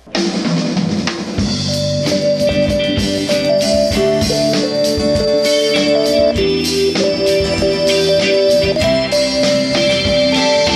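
A live pop-rock band playing a song's instrumental intro: drum kit, strummed acoustic guitar and electric guitar, with long held notes over them. It starts right away and fills out with the full band about a second and a half in.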